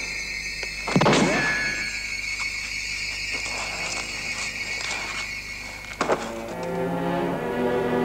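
Tense film-score music: a high, held, squealing tone with a sudden loud hit about a second in. About six seconds in, lower sustained string notes take over.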